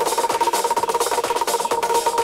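Electronic music from a DJ set: a fast, dry clicking percussion pattern over a steady held tone, with little bass.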